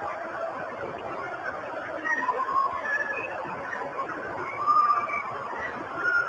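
Purported 'sounds from hell' tape from the deep Siberian borehole, played back: a third-hand recording of a dense mass of wailing, screaming voices over a steady hiss, swelling louder near five seconds in.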